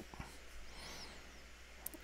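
Faint room tone: a steady low hum under light hiss, with one short click near the end.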